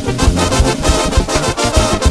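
Mexican banda music, an instrumental passage: a brass section playing over a low bass line and a steady drum beat.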